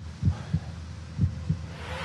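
Low heartbeat-like thumps in two double beats about a second apart, the trailer's sound design holding a tense pause.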